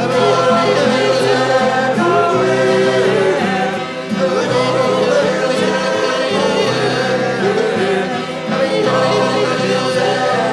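Several voices singing together in a folk-style song over a harmonium's steady held chords, with guitar accompaniment.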